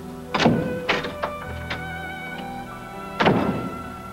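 A door being opened and shut: two heavy thuds and a few lighter clicks near the start, then a loud thud about three seconds in, over soft background music.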